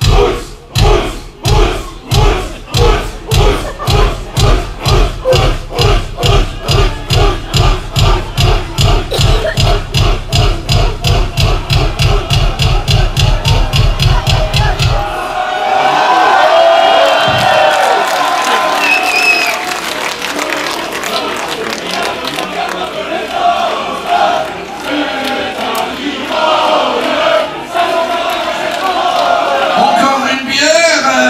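Live metal-show bass drum beating faster and faster, from about two to about four beats a second, with the concert crowd shouting along on each beat. It stops abruptly about halfway through, and the crowd carries on cheering and shouting.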